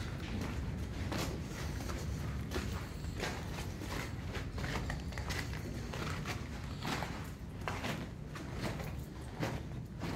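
Footsteps of boots crunching over loose, broken rock, irregular steps about every half second to a second, over a steady low rumble.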